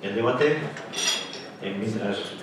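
Tableware clinking: cutlery against plates and glasses, with one bright ringing clink about a second in.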